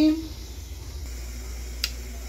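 A woman's drawn-out "e…" trailing off, then low, steady room tone with one short click near the end.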